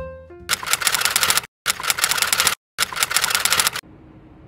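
The last notes of a jazzy piano tune, then a typewriter sound effect: three runs of rapid key clicks, each about a second long, with short silent gaps between them, stopping shortly before the end.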